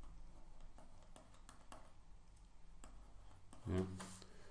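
Faint, irregular clicks and taps of a pen stylus on a drawing tablet as an expression is handwritten, about a dozen scattered ticks.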